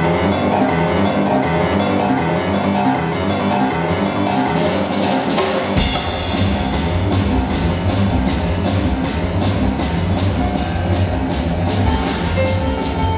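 Boogie-woogie on grand piano with a steady beat on the drum kit. About six seconds in, an upright bass joins with a deep bass line.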